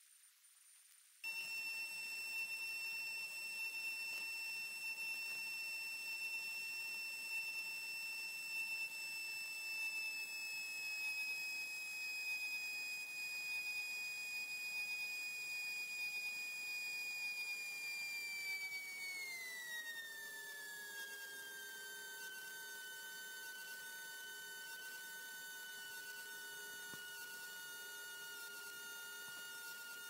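A steady high-pitched whine picked up through a Piper Warrior's intercom audio, cutting in abruptly about a second in. About two-thirds of the way through it glides smoothly down in pitch and settles lower, as the engine is brought back toward idle in the landing flare.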